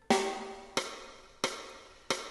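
Drum count-in on a play-along backing track: three sharp percussive clicks at an even beat about two-thirds of a second apart, each ringing briefly, counting the flute in.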